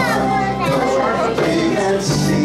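Children's voices close by, talking and playing over a live band. The band's low notes drop out and come back in at the very end.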